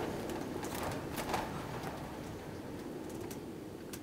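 Windstorm heard from inside a caravan: a faint, steady rushing of wind with occasional light ticks from the buffeted van.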